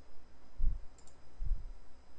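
Two dull, low thumps about a second apart, with a faint sharp click between them: handling of a computer mouse and desk close to the microphone.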